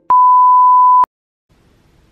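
A television test-pattern beep: the steady, single-pitched reference tone that goes with colour bars, sounding loudly for about a second and cutting off abruptly.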